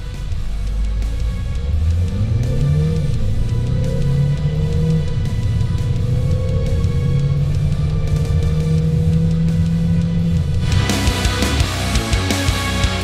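Volkswagen Ameo's 1.5-litre TDI diesel engine accelerating flat out from a standstill, its note climbing and dropping back several times as the 7-speed dual-clutch automatic upshifts. Heavy rock music plays underneath and swells back up near the end.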